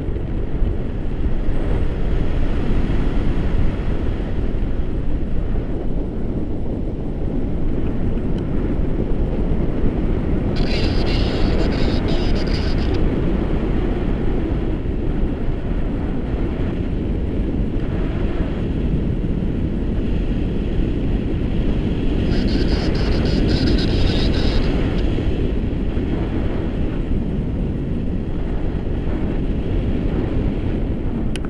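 Airflow buffeting the microphone of a camera riding on a tandem paraglider in flight: a loud, steady low rumble of wind noise. Two spells of brighter hiss, each two to three seconds long, come about a third of the way in and again about three-quarters through.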